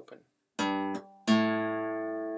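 Steel-string acoustic guitar picking two single bass notes of a riff. A short G on the sixth string's third fret is followed, a little past halfway, by the open fifth (A) string, which is louder and left to ring and slowly fade.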